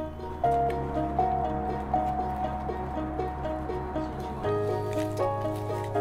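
Background music: a gentle tune of held notes over a steady bass line, the bass shifting to a new note about half a second in and again near the end.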